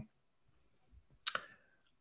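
A single short click about a second into an otherwise near-silent pause in speech.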